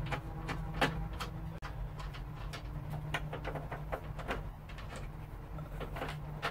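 Scattered light metallic clicks and short scrapes as bolts and nuts are worked loose by hand on the steel roof rail of a Series IIA Land Rover, over a steady low hum.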